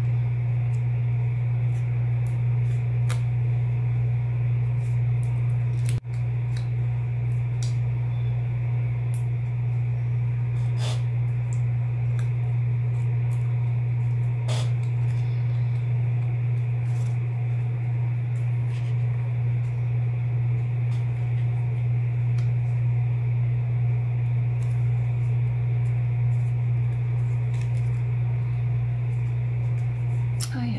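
A loud steady low hum, with faint scattered clicks and rustles of cardstock pieces being handled and pressed down onto a card. The sound drops out briefly about six seconds in.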